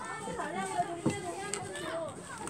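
Several high-pitched voices chattering and calling in the background, with a sharp knock about a second in.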